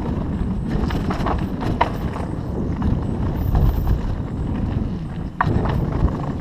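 Mountain bike running fast down a dirt singletrack: a steady rumble of tyres and rushing air, with the bike rattling and clicking over bumps, and a sharp knock near the end.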